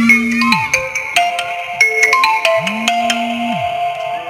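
Mobile phone ringtone: an electronic melody of clear, steady notes over a low note that swells in and falls away, the phrase playing twice, about two and a half seconds apart.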